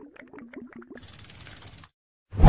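Clicking, ratchet-like sound effect for an animated end card: a run of quick clicks with short pitched blips, then a faster, brighter ticking rattle in the second half that cuts off just before the end.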